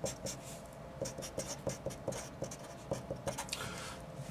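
Felt-tip marker writing words on paper: a quick, irregular series of short strokes.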